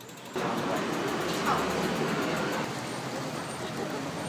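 Steady outdoor rush of road traffic noise that starts abruptly about a third of a second in and eases a little after about two and a half seconds.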